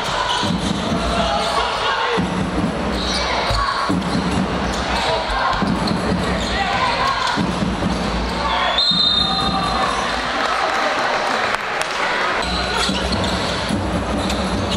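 Basketball game in a gym: the ball bouncing on the hardwood court as players bring it up, with voices from the crowd and players throughout and a brief high squeak past the middle.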